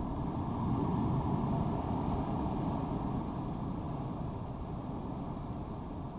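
Low, steady rumbling background noise that swells slightly about a second in and then slowly eases off.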